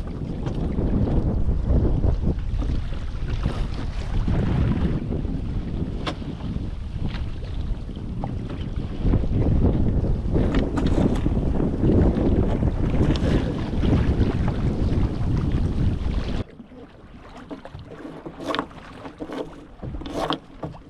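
Wind buffeting the microphone over water rushing and splashing along the hull of a small sailboat under way. About three-quarters of the way through the wind noise drops away suddenly, leaving quieter, separate splashes and slaps of water against the hull.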